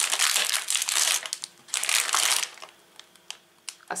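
Crinkling of a plastic packet of puff pastry dough being handled and turned over by hand. There are bursts of crackling for the first second or so and again around the two-second mark, then a few small crackles as it settles.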